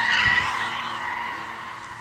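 Car tyres screeching as a car drifts, a high, steady squeal that fades away over the two seconds.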